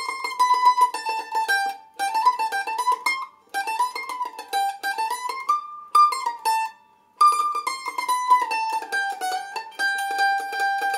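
Sunburst A-style mandolin played with rapid tremolo picking, each note struck many times in quick succession. It runs stepwise scale passages down and back up, pausing briefly a little after three seconds and again around seven seconds in.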